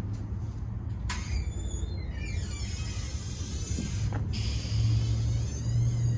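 Low, steady rumble of a motor vehicle's engine and traffic, growing a little louder in the second half, with a couple of short clicks.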